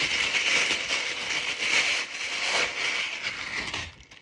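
Thin plastic bag crinkling and rustling as it is pulled off a water bottle by hand, stopping sharply near the end.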